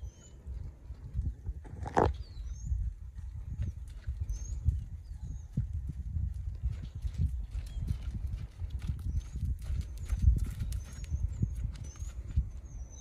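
Horse's hooves thudding softly and unevenly on an arena's deep sand as it trots toward the microphone and then walks. A sharp knock comes about two seconds in.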